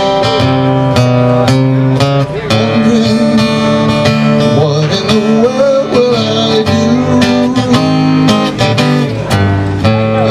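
A live song performance led by guitar, with steady music and changing chords.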